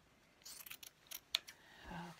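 Sharp fabric scissors snipping through a t-shirt: a quick run of short, sharp clicks of the blades closing, from about half a second in to about a second and a half in.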